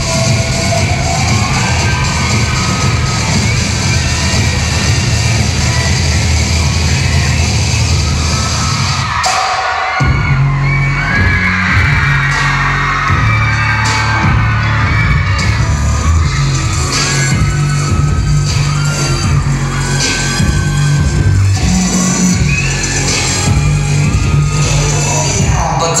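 Loud K-pop dance track played over a hall's PA loudspeakers, with a heavy steady beat that cuts out briefly about nine seconds in before coming back with sung vocal lines.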